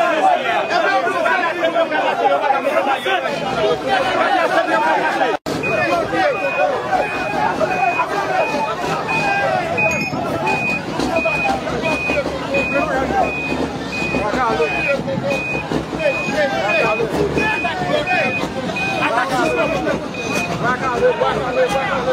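A truck's reversing alarm beeping at one steady pitch, about one and a half to two beeps a second, starting about five and a half seconds in. Throughout, a crowd of many voices talks over it.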